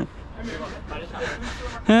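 Faint voices of players in the distance over steady outdoor background noise. A man's close shout starts near the end.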